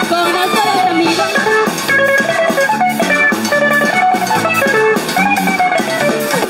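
Upbeat band music with a steady drum beat under a moving melodic line, played without singing.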